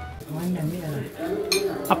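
Voices talking, followed by a couple of sharp clinks or rustles about a second and a half in.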